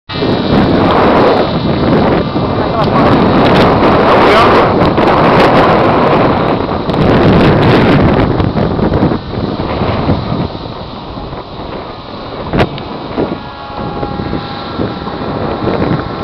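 Strong wind buffeting the microphone in gusts, loudest for the first nine seconds and then easing off, with a single sharp click about twelve seconds in.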